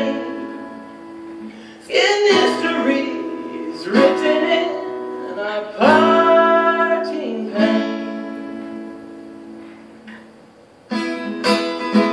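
Acoustic guitar strummed in slow chords, each struck about every two seconds and left to ring, with a man singing over them. The sound dies away to a quiet stretch around ten seconds before the strumming starts up again near the end.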